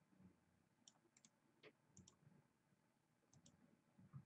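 Near silence with a handful of faint, scattered clicks from computer mouse and keyboard use.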